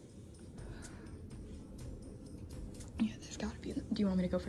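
Hushed whispering voices over a low steady rumble, with a voice coming in about three seconds in.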